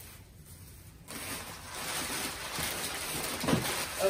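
Crumpled brown kraft paper packing being rustled and pushed aside by hand, starting about a second in.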